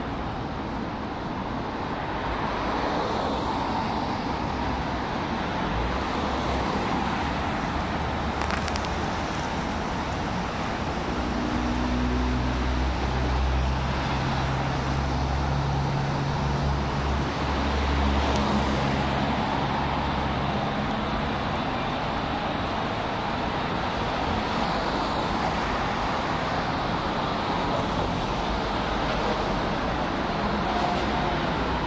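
Road traffic on a multi-lane city road: the steady noise of passing cars' tyres and engines. Through the middle stretch a low engine hum builds and then fades.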